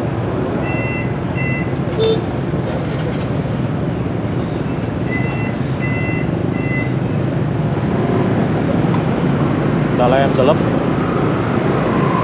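Steady rumble of a crowd of idling motorbikes and scooters in street traffic. Short runs of a high electronic beep sound twice, about one second in and again around five to six seconds in.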